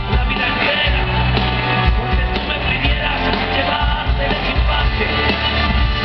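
Live rock band playing at full volume, picked up from the audience, with a male lead voice singing over it.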